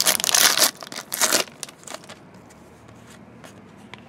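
A foil trading-card pack wrapper being torn open by hand: a long loud rip in the first half second or so, a second shorter rip about a second in, then quieter handling with a few faint clicks.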